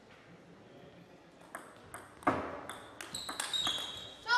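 A table tennis rally: the celluloid ball clicking sharply off the bats and the table, starting about a second and a half in, with the loudest hit about halfway through. Near the end, short high squeaks of rubber shoe soles on the court floor join the hits.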